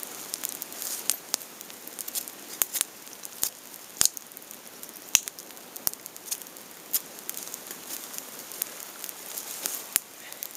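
Raindrops falling close by in an irregular patter of sharp ticks and taps over a faint hiss, with a few much louder taps around the middle.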